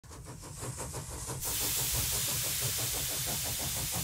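Steam engine running with a quick, even beat, joined about one and a half seconds in by a loud, steady hiss of steam.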